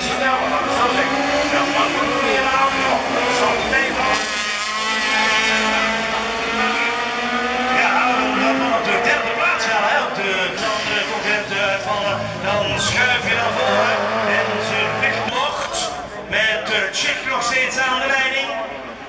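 Several rallycross race cars' engines running hard as they race past, their pitch rising and falling as they accelerate and shift, with a run of sharp cracks near the end.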